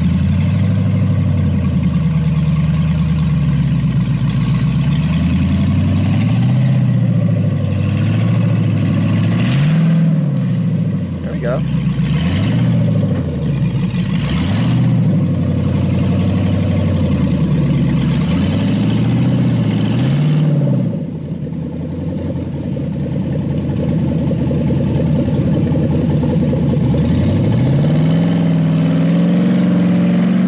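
Off-road rock crawler's engine working hard up a steep climb, its revs rising and falling in repeated blips through the middle, easing briefly about two-thirds in, then building steadily near the end.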